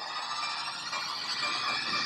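A movie trailer's soundtrack: a sustained drone of several held tones over a hiss, slowly swelling louder.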